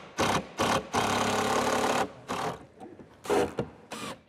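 Power drill running into a plywood sheet in short bursts, with one longer run of about a second.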